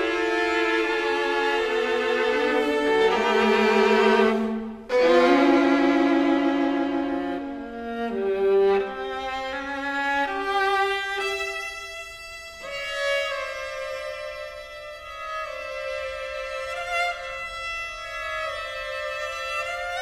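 String quartet playing: violins, viola and cello in held notes with vibrato, with a brief break about five seconds in, then softer, higher sustained notes through the second half.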